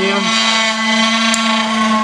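Electric motors spinning a disk at about 6 to 7 thousand rpm inside a vacuum chamber: a steady hum with a high whine above it, just after the power has been switched off and as the revs begin to fall.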